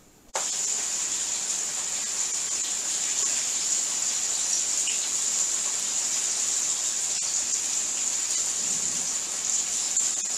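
Pork chops sizzling in hot frying oil: a steady hiss that starts suddenly about a third of a second in, as a chop goes into the oil, and keeps an even level.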